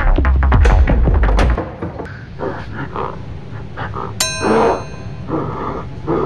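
Background music with a heavy beat that drops away after about a second and a half; about four seconds in, a single bright metallic clang rings on like a struck bell for about a second.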